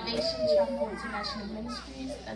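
Speech: a high-pitched voice talking through a microphone, with no other sound standing out.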